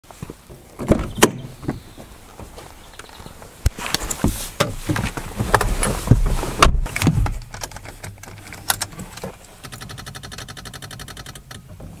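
Car door clicks and clunks as it is opened and the driver gets in, then about nine and a half seconds in, when the key is turned, a rapid, even clicking for about two seconds instead of the engine cranking: the starter chattering on a flat battery in a Skoda Fabia 1.9 PD TDI.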